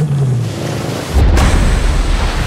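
A car engine accelerating as the gas pedal is pressed, with a sudden loud rush of noise surging in just past a second in.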